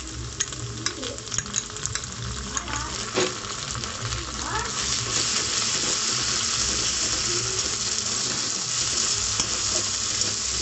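Ginger-garlic paste and sliced onions frying in hot oil in a steel wok, stirred with a metal spatula: scraping clicks over the first few seconds, then the sizzle grows louder about five seconds in as the paste is worked into the oil.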